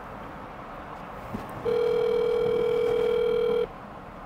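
Ringback tone from a smartphone on speakerphone, as an outgoing call rings at the other end: one steady two-second ring starting about a middle of the way through, over the quiet hum of a car cabin.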